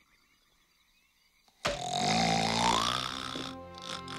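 Near silence, then about a second and a half in, a sudden loud cartoon snore with a rising pitch from a character dozing off, followed by music with held notes near the end.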